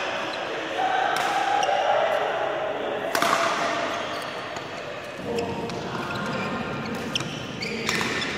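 Badminton rackets hitting a shuttlecock during a fast doubles rally: a handful of sharp smacks spaced a second or more apart, the loudest about three seconds in and two close together near the end, with players' footfalls on the court.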